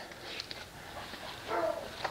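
A faint, short animal call about one and a half seconds in, over a quiet background.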